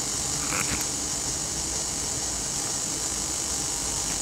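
Steady hiss from a loudspeaker fed by an audio amplifier and a PT2399 echo mixer board, picked up close to the speaker while the kit's microphone is still switched off. This is the idle noise that this kit is said to produce a lot of.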